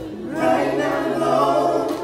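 Male gospel group singing live in harmony with band accompaniment: the voices come in together about half a second in and hold a chord over a steady low bass note, dropping away just before the end.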